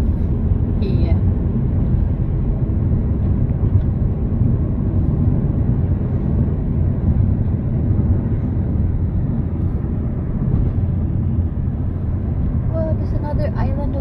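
Steady low road and engine rumble of a car cruising at highway speed, heard from inside the cabin. Tyre noise on the concrete bridge deck holds at an even level throughout.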